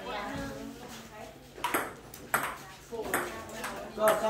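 Table tennis ball being hit back and forth in a rally, clicking sharply off the paddles and the table. There are several quick hits in the second half.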